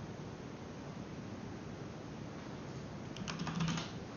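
A quick burst of computer keyboard keystrokes near the end, as a stock ticker symbol is typed in, over a steady background hiss.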